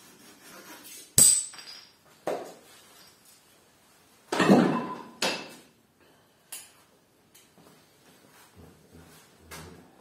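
Metal bonsai tools (pliers and wire cutters) clicking and clinking as a pine branch is wired, with a sharp click about a second in, the loudest sound. A longer clatter follows near the middle, then lighter clicks and handling rustles.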